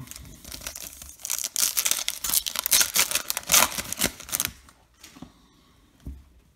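A baseball card pack's plastic wrapper being handled and torn open: a dense run of crinkling and tearing crackles starting about a second in and stopping about a second before the end.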